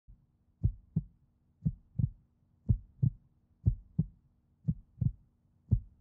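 Heartbeat sound effect: slow low double thumps, lub-dub, about one pair a second, six pairs in all, over a faint steady hum.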